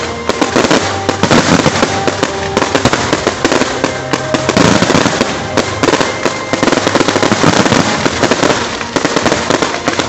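Fireworks display: a continuous, dense barrage of aerial shell bursts and crackling, several bangs a second with no pause.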